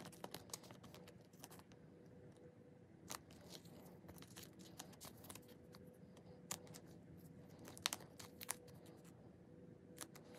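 Faint crinkling of thin plastic card sleeves and light clicks as photocards are handled and slid into them by hand. The sharpest clicks come about three seconds in and again around six and a half and eight seconds.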